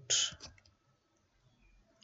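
A short hiss just after the start, then a few faint clicks of computer keyboard keys as characters are typed.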